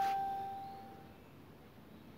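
A single clear ding at the start that rings out as one steady tone and fades away over about a second.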